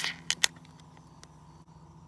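Aluminium beer can being opened: the tail of a hiss, then two sharp clicks from the pull tab in quick succession, about half a second in.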